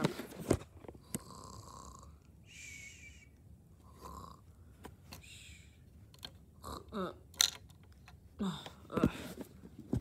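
A person imitating snoring with a few slow, breathy snores, along with a few sharp clicks of plastic Lego pieces being handled.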